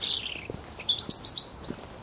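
Small songbirds chirping: a twittering phrase that falls in pitch, then a quick cluster of short high chirps about a second in, over faint footsteps on a leaf-strewn path.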